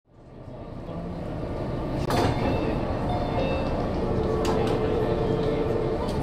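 Disney Resort Line monorail standing at a station platform: a steady rumble and hum of the train and station, fading in over the first second. A sharp knock comes about two seconds in, and a steady tone joins in over the last two seconds.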